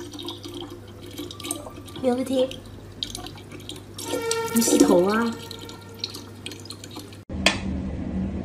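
Tap water running into a plastic bottle, with a person's voice briefly heard twice, loudest about four to five seconds in. Near the end the water sound cuts off and a single sharp tick of a mechanical metronome follows.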